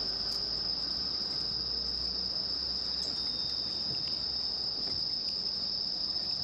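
Crickets chirring in a steady, unbroken high-pitched night chorus.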